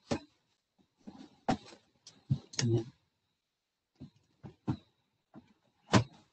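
Intermittent knocks and clicks of objects being handled and set down close to a laptop microphone, about eight short separate sounds, the loudest near the start and at the end, over a faint steady high whine.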